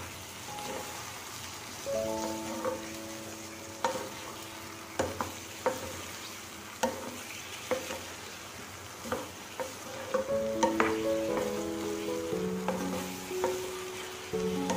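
Soya chunks sizzling in oil in a pan while a wooden spatula stirs them, knocking and scraping against the pan at irregular intervals. Background music with held notes plays along and gets louder in the last few seconds.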